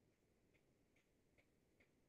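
Near silence, with very faint, regular ticks about two or three a second.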